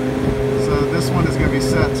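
Steady mechanical hum of a walk-in refrigeration unit running, with a constant low tone under it.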